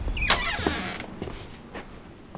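Door hinge creaking as the door swings open: a single squeal that falls in pitch over about half a second and fades out by about a second in.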